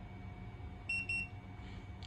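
Two short, high-pitched electronic beeps about a quarter second apart from the Hikvision AX Hybrid Pro alarm system as it finishes booting up, over a faint steady hum.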